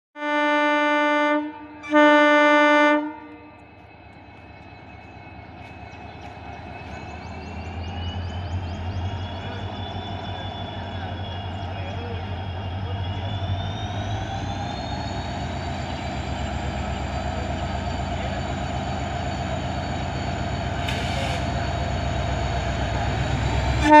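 WDP4D diesel-electric locomotive, with an EMD 710 two-stroke V16, sounds two blasts on its horn and then powers up to pull its train out. The engine rumble grows steadily louder, with a high whine rising in pitch. Another horn blast begins at the very end.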